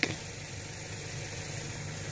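A vehicle engine idling steadily: an even, low hum with nothing else breaking through.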